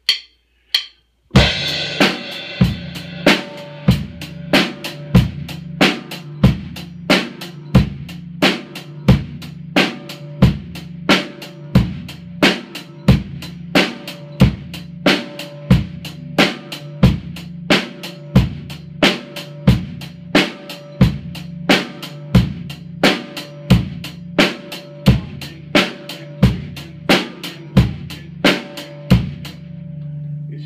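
Drum kit playing a basic four-four beat with sticks: kick, snare and hi-hat in even quarter-note time at a moderate tempo, about one and a half strong hits a second. After a few light hits, the full beat starts a little over a second in on a loud hit, with the drums' low ringing carrying under the strokes.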